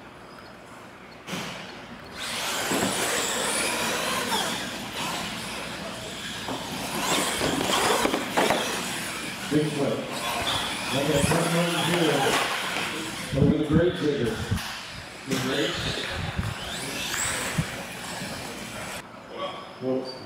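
Radio-controlled monster trucks racing on a concrete floor: electric motors whining with a high pitch that rises as they accelerate, plus tyre and drivetrain noise. The noise starts about two seconds in and dies away near the end, with voices over it.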